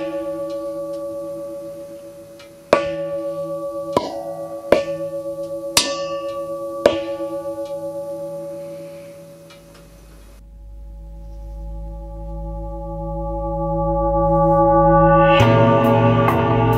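Aluminium lamp shade struck on its rim with a soft mallet six times in the first seven seconds, each strike ringing on like a gong with a few steady metallic tones that pulse slightly as they fade. In the second half the same ringing slowly swells louder over a deep low hum, and a fuller set of tones comes in near the end.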